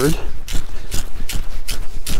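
A quick, uneven run of small clicks and rustles, several a second, over a low rumble.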